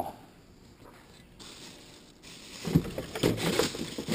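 Mostly quiet for the first two and a half seconds, then irregular knocking and rustling as a long pole pokes among bags and bananas inside a dumpster.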